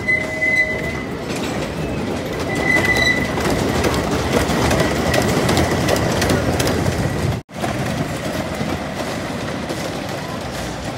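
Racer 75 wooden roller coaster train rolling along its wooden track: a steady rumble and clatter of wheels, with two brief high squeals in the first three seconds. The sound breaks off sharply about seven and a half seconds in, and a similar, slightly quieter rumble follows.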